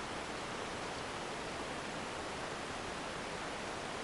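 Steady, even background hiss with nothing else standing out.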